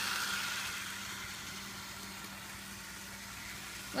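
Toy trolley running on a toy train track: its small motor and wheels give a steady whir with a low hum, growing fainter as it moves away.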